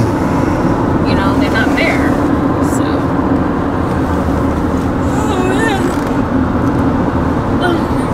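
Steady road and tyre noise inside the cabin of a moving car, with a constant low drone.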